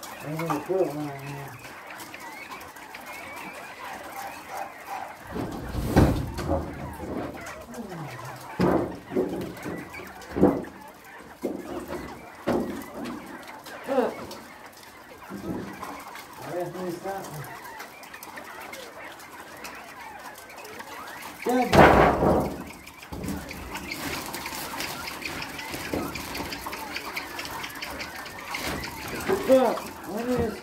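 Knocks, thumps and scrapes of cleaning work, loudest in a burst of about a second a little over two-thirds of the way through, with low voices and caged bobwhite quail calling in the background.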